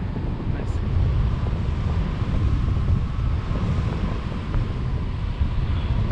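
Wind from a paraglider's forward flight buffeting the selfie-stick camera's microphone: a loud, steady, deep rumble.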